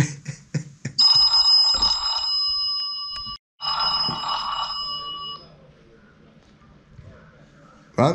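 Telephone ringing: two bell-like rings of several steady high tones together, the first about two and a half seconds long and the second about two seconds, with a brief gap between them. A few light taps come before the ringing.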